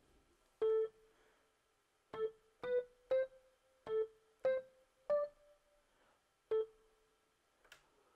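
Single notes from an Xpand!2 keyboard patch in FL Studio, played one at a time: a slow, halting line of about eight notes in the middle range, stepping up and down among a few nearby pitches while a melody is being picked out. A faint click comes near the end.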